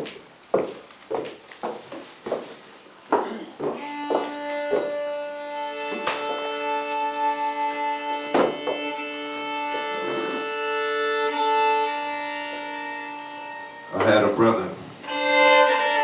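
Solo violin improvising. After a few scattered knocks and clicks, the violin sets in with long sustained bowed notes and double stops that hold for several seconds. A louder, busier passage comes in near the end.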